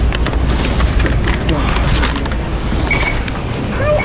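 Plastic shopping basket clattering and knocking as it is pulled from a stack and carried, over a steady low rumble. A short high beep sounds about three seconds in.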